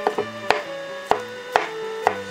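Large kitchen knife slicing rolled egg omelets into thin strips, each cut ending in a sharp knock on a wooden cutting board, about five cuts roughly half a second apart. Soft background music with steady tones plays underneath.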